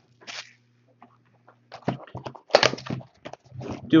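Clear plastic wrap crinkling in the hands while a cardboard trading card mini box is opened: a few short crackles, the loudest about two and a half seconds in.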